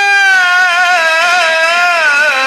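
A male Quran reciter holding one long note in the melodic mujawwad style, the pitch wavering gently as it is sustained.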